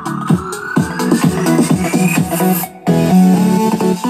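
Electronic dance music playing through an E5 wireless smart speaker. A rising sweep climbs over the beat for about two and a half seconds and cuts off in a brief break, then the bass and beat come back in.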